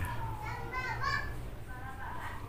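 Children's voices in the background, strongest around the middle, over a steady low hum.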